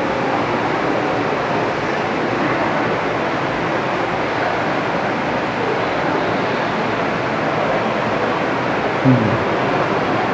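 Steady rushing background noise with no speech, and a brief low falling sound about nine seconds in.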